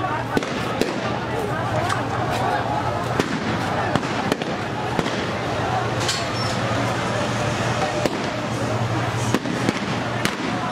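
Police gunfire: sharp shots cracking out one or two at a time at irregular intervals, over crowd voices and a steady low hum.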